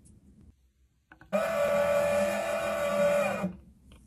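A small electric motor whirring at a steady pitch for about two seconds, starting suddenly and then stopping; it is much louder than the light handling sounds around it.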